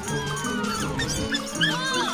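Cartoon background music with many short, high squeaks rising and falling in pitch, from a group of cartoon mice scampering about.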